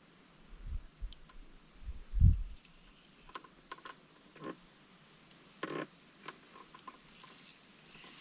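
Spinning fishing reel being worked by hand, giving scattered light mechanical clicks. A dull low thump about two seconds in is the loudest sound.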